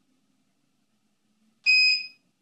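A single short, high-pitched electronic beep from a ballistic chronograph near the end, after near silence. It confirms the setting after the button has been held for three seconds.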